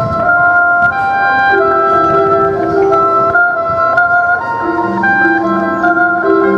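High school marching band playing, held wind and brass chords that move from note to note every second or so, over front-ensemble percussion with a few sharp strikes.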